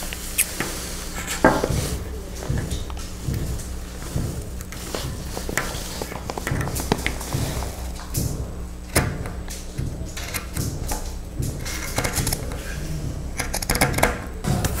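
Scissors snipping through bundled cotton macramé cord: a run of short, irregular cuts and handling clicks, thickest about two-thirds of the way through.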